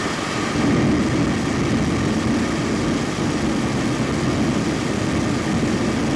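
The nine Aeon 1 engines of a Terran 1 rocket first stage firing together in a ground static fire test, a loud, steady rocket roar.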